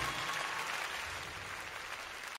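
Faint, even hiss-like noise slowly fading away after the song has ended.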